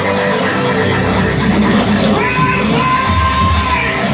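Live gospel band and singers performing loudly, with keyboard, drums and voices on microphones, heard from the audience. A long held note sounds in the second half.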